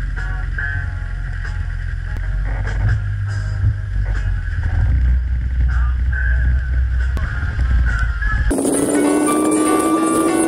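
Van engine and road noise heard inside the cabin while driving, with music from the dashboard stereo over it. About eight and a half seconds in, this cuts off suddenly to a different, clearer piece of music.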